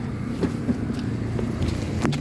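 Car engine idling, a steady low hum heard from inside the car, with a few light knocks and rustles as someone climbs in.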